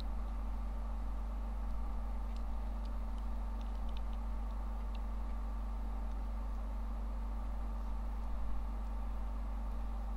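Steady low electrical hum and hiss of the recording's background, with a few faint ticks between about two and five seconds in.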